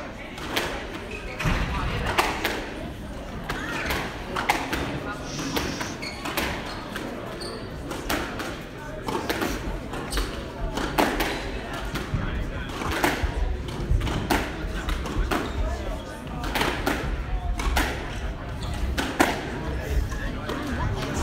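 Squash rally: the ball cracking off rackets and smacking off the court walls and glass, a sharp hit about every second.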